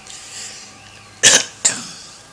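An elderly woman coughing twice, two short loud coughs in quick succession a little past the middle.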